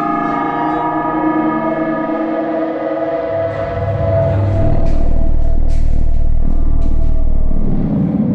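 Horror film score: a gong-like ringing drone of many steady tones that starts with a sudden hit just before this stretch, with a deep low rumble swelling in about three seconds in and dropping away near the end.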